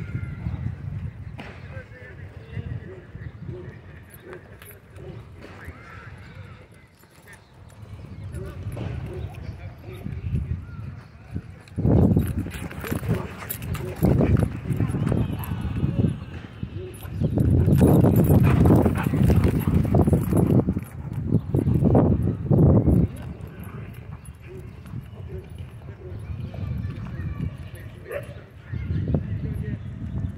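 Dogs playing rough at close range: a run of loud scuffling bursts in the middle, between quieter stretches.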